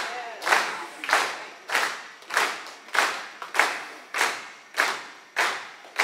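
A congregation clapping together in a steady rhythm, a little under two claps a second, with a short echo of the room after each clap.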